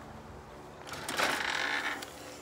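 Aluminium screen door of a screened enclosure being opened or closed: a rattling scrape about a second in, lasting about a second.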